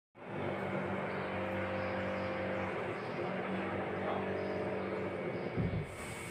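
A steady mechanical hum with a noisy rush, as of a motor or fan running, starting abruptly; a short low thump near the end.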